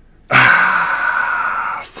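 A man sighing: one long, breathy exhale lasting about a second and a half, starting with a brief voiced onset.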